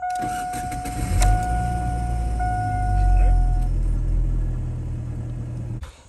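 A pickup truck's engine cranking and starting about a second in, swelling in the middle and then running steadily, while a dashboard warning chime sounds a steady tone through the first half.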